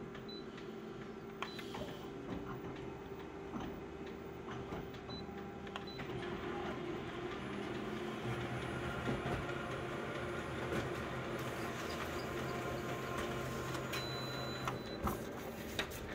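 Colour photocopier running an enlarged copy job: a steady mechanical hum that grows a little louder about halfway through as the copy goes through the machine, with a few light clicks.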